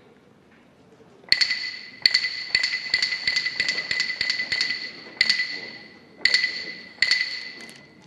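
Hyoshigi, a pair of wooden clappers struck by a yobidashi, ringing out as a signal: two spaced claps, then a quickening run of claps, then three slower ones near the end. Each crack rings with a clear high wooden tone.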